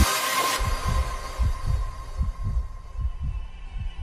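A hardstyle track stops abruptly, its reverb tail fading within the first second. It is followed by a sparse intro of low, deep thuds, two or three a second, under a faint steady high tone, like a heartbeat.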